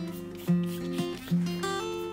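Background music: a plucked acoustic guitar playing single notes, a new note about every half second.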